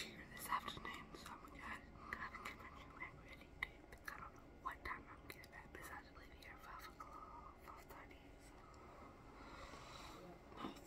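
A young woman talking very softly, close to a whisper, with faint short clicks among the words.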